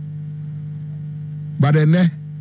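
Steady low electrical mains hum in the recording, with a man's voice coming in briefly near the end.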